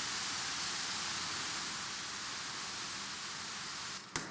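Steady, even rushing of Iguazu Falls, a large waterfall.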